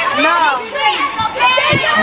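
Several children talking and calling out over one another at once.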